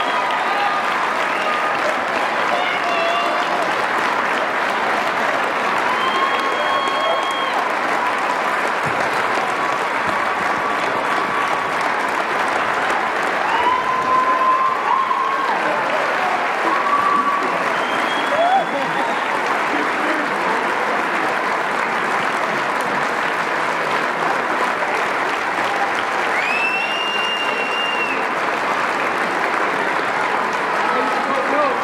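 A large crowd clapping steadily throughout, with cheers and raised voices rising above it now and then.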